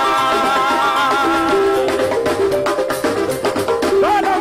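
Live duranguense band music: a held, wavering melody over the beat, then from about two seconds in a run of sharp drum strokes comes to the fore over stepping lower notes.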